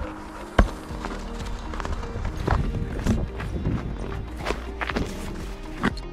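A single sharp impact about half a second in, a splitting maul striking a log on a chopping block, followed by background music.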